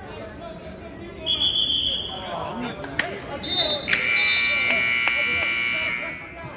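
Gym scoreboard buzzer at a wrestling match, sounding one long steady blast for about two seconds near the end, marking the end of a period. A brief high steady tone comes about a second in, and voices from the gym go on underneath.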